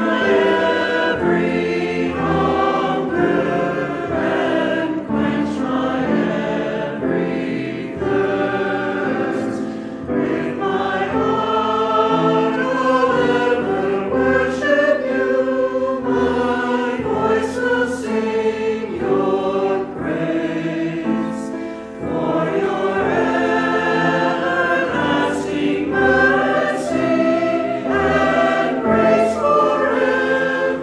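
A church choir singing a sacred anthem, the sung lines going on without a pause.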